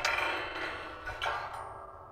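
Short ringing outro sting: a sudden struck, chime-like note, a second strike about a second later, the whole sound fading away.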